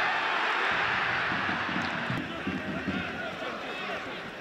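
Football stadium crowd noise: a dense mass of voices that is loudest in the first two seconds and eases about halfway through.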